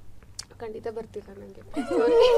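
Soft voices, then near the end a woman breaks into a loud, wavering laugh.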